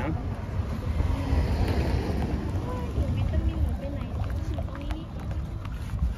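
Wooden paddle stirring and scraping melted palm sugar in a large metal basin, under a steady low rumble of wind on the microphone, with faint voices in the background.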